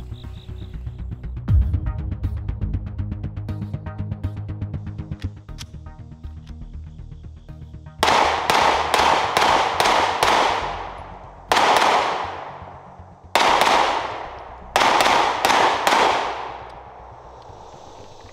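Background music for the first eight seconds, then a SIG Sauer P365-series pistol fired in several quick strings of shots, a few shots a second, each report trailing off in a long echo.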